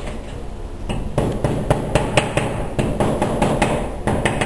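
A mason's hand tool tapping and scraping on mortar at floor level, in quick repeated strokes of about four sharp taps a second, starting about a second in.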